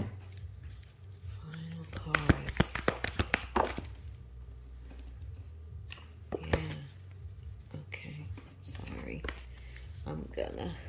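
A deck of tarot cards being shuffled by hand: a quick run of sharp card flicks between about two and four seconds in, and a shorter riffle a little past the middle, over a steady low hum.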